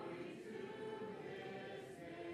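A choir singing slow, held chords, fairly quiet.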